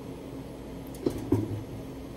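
Two short knocks a little over a second in, about a quarter second apart, as a gloved hand handles the cryostat, over a steady low hum.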